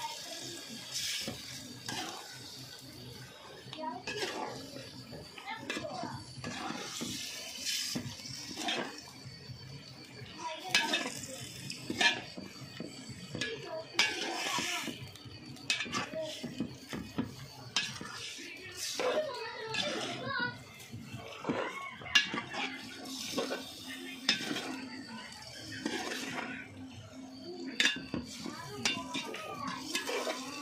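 A metal spoon repeatedly scraping and clinking against an aluminium cooking pot as food in gravy is stirred. Voices are heard in between.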